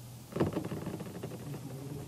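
Steady low room hum, then, from about half a second in, a faint, muffled voice from across the lecture room, consistent with a student calling out an answer.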